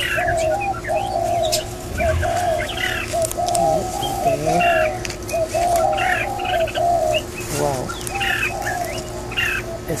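Birds calling: a near-continuous run of short, low, arched notes, with higher chirps over them now and then.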